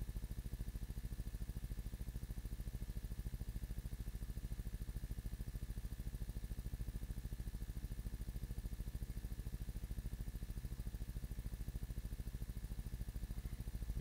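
A steady low hum with a fast, even pulsing; no distinct handling sounds stand out over it.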